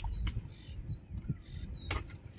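A long pole knocking against tree branches, two sharp knocks, one a little after the start and one near the end, with faint bird chirps and wind rumbling on the microphone.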